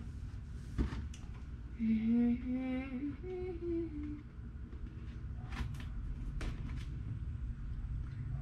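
A girl humming a short tune of a few held notes for about two seconds, starting about two seconds in, stepping up in pitch and then dropping back a little. After that come only a few faint clicks from handling the gift.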